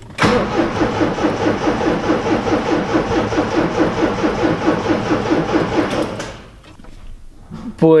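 Triumph TR7's slant-four engine turning over on the starter motor in an even rhythm for about six seconds without firing, then the cranking stops. It won't catch because no fuel reaches the carburettors: the fuel tank outlet is blocked.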